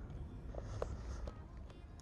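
Faint handling sounds with a few light ticks as hands press double-sided tape onto the back of a body-cladding piece, over a low steady rumble.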